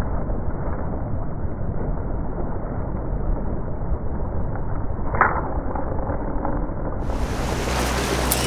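Moving boat's motor and rushing water as a steady, muffled low rumble with no highs, one brief sharper sound about five seconds in. About seven seconds in the sound turns clear and brighter as a carp splashes in the water.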